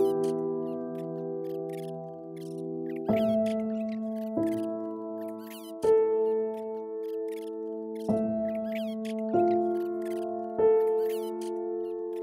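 Slow, soft piano music: a chord is struck every second or two and left to ring and fade. Short high chirps are layered over it throughout.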